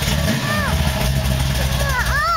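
Modified 351 Windsor V8 with a big cam, Demon carburetor and Flowmaster mufflers, idling with a steady deep exhaust rumble. Short high chirps that rise and fall sound over it about half a second in and again near the end.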